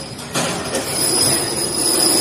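CNC wire bending machine running: a short burst of noise, then a steady high-pitched whine that sets in just under a second in, over a running hum.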